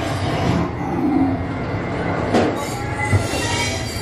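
Roller coaster train running along its track, with a steady rumble of wheels on rail.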